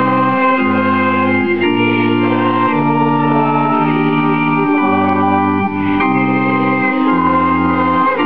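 Electronic organ playing slow, held chords, the chord changing about once a second.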